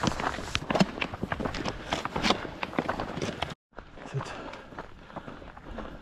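Footsteps on a dry, rocky trail with trekking-pole tips clicking against stones: a quick, irregular run of crunches and clicks. A little over halfway through it cuts out for a moment, then slower, quieter steps come back.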